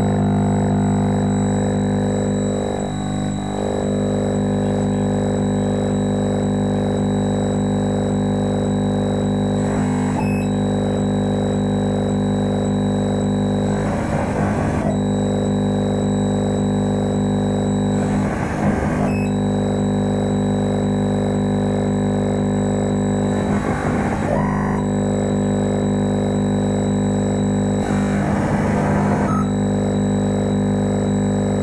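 Live electronic noise music: a dense, steady drone of many held tones. From about ten seconds in, a short burst of hissing noise cuts across it roughly every four to five seconds.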